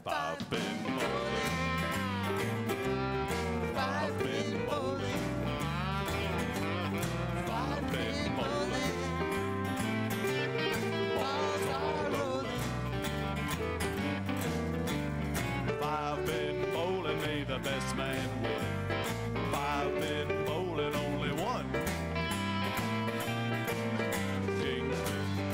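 Live country-folk band playing an instrumental passage with no singing: a steady drum beat, a walking bass line and guitars, with a lead line that bends up and down in pitch.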